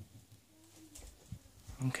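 Felt-tip marker scratching and tapping faintly on paper as the last of an equation is written. A short, faint low tone sounds in the background about half a second in.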